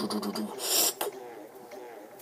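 A man making a rattling, buzzing mouth noise on one held pitch, which stops about half a second in. It is followed by a short breathy hiss and a click.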